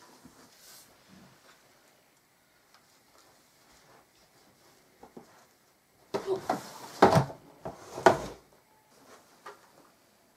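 Scuffing and rustling movement noise with two sharp knocks about seven and eight seconds in, after a mostly quiet start.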